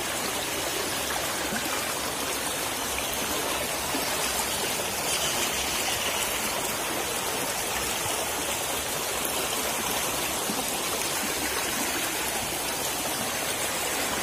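Shallow rocky stream rushing over stones, a steady, even sound of flowing water.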